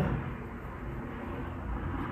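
A low, steady background rumble with no clear events in it.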